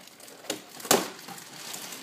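Cardboard box with packing tape being handled: two sharp clicks about half a second apart, the second louder, with light rustling between them.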